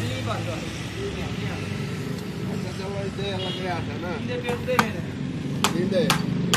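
Men's voices talking, with two sharp hammer knocks near the end from workers putting up wooden shuttering.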